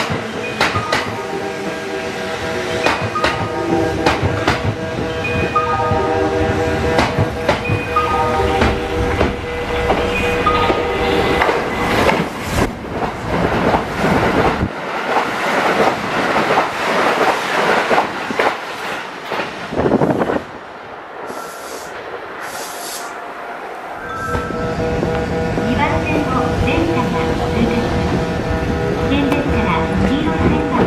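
Trains at a station platform. First a local train moves off with a steady tone and wheel clicks over the rail joints. Then a Kintetsu limited express passes through at speed, a loud rush with the clatter of its wheels over the rail joints, lasting several seconds in the middle; near the end another train draws in with steady tones.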